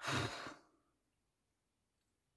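A woman sighing once: a single breathy exhale of about half a second.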